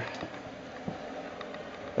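Steady low background noise with a faint click about a second in.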